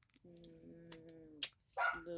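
A dog whining once: a steady, slightly falling tone lasting about a second, followed by a sharp click.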